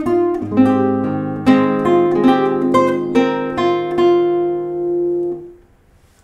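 Nylon-string classical guitar played fingerstyle: a short melodic phrase of plucked notes over held bass notes, with the melody played disconnected rather than legato, its notes cut off by lifting the fingers before the next note. The phrase ends on a held chord that fades out about five and a half seconds in.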